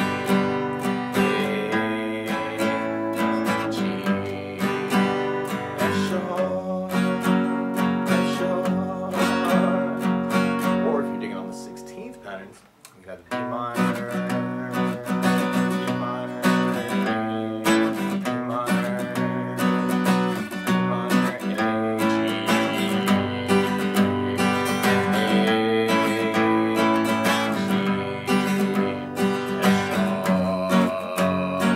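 Acoustic guitar strummed in a steady down-up pattern through B minor, A, G and F sharp chords, with a single bass note picked on the first down stroke of each chord. The playing thins out briefly near the middle, then picks up again.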